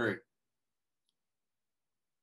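A man's voice finishing a word, then dead silence on a video-call audio track, broken only by one faint tick about a second in.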